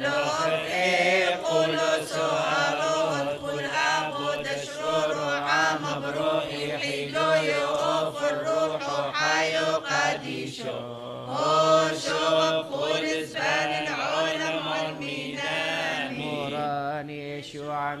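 Syriac Orthodox liturgical chant: voices singing a slow, ornamented melody with wavering, melismatic pitch over a steady low note, with a brief break about ten seconds in.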